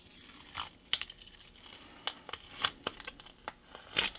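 Blue painter's masking tape being handled, pressed down and pulled on the cutting mat: a string of short crinkles and crackles with a few sharper clicks.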